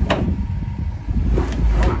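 A flat-tyred Camaro drag car being dragged out of a garage on a tow rope: a loud low rumble with a sharp knock at the start and two more near the end.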